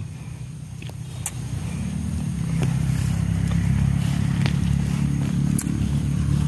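A motor vehicle engine running close by, growing louder over the first two seconds and then holding a steady low hum. A few light clicks sound over it.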